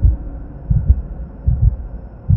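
Several deep, irregularly spaced bass thuds over a faint low hum: the tail of a logo-reveal intro sound effect.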